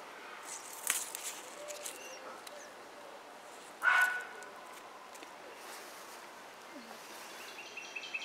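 A single short, loud animal call about four seconds in, over a faint outdoor background with a few soft clicks.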